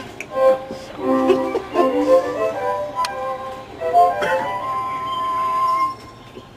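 Recorded music from an animatronic instrument display: a short tune of violin- and flute-like notes, ending on one long held high note that cuts off suddenly.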